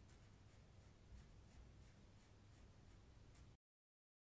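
Faint scratching of a felt-tip marker colouring in a printed pencil case, in short, irregular strokes. The sound cuts off abruptly near the end.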